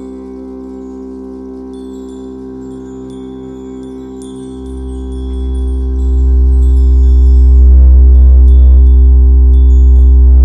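Ambient sleep music: a steady sustained drone with high, scattered chime-like tinkles. About halfway through, a deep bass drone swells in and becomes the loudest sound.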